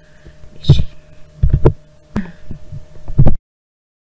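Several short, dull thumps and knocks close to the microphone over a faint steady hum, then the sound cuts off abruptly about three and a half seconds in.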